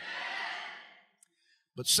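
A long breathy exhale close to a handheld microphone, swelling and then fading out over about a second. A faint click follows, and the man's speech resumes at the very end.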